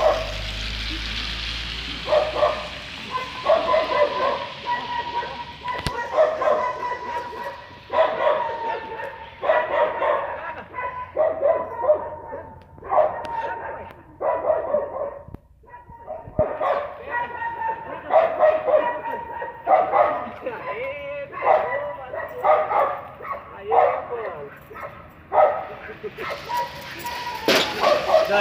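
A dog barking over and over, about once a second, with a few yips among the barks.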